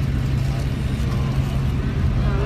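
A fire engine idling: a steady low engine rumble that holds unchanged throughout.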